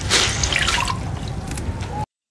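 Water dripping and trickling, a steady noisy splashing that cuts off suddenly.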